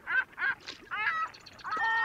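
Gulls calling: a quick run of short, pitch-bending calls, about four a second, then a longer drawn-out call starting near the end.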